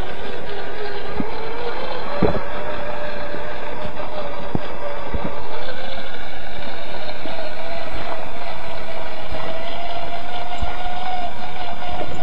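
Whine of a radio-controlled rock buggy's electric motor and gears, running steadily and creeping slowly up in pitch, over a noisy bed with scattered sharp clicks from the tyres on the gravel road.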